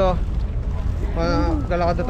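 A person's voice, briefly at the start and again from a little over a second in, over a steady low rumble.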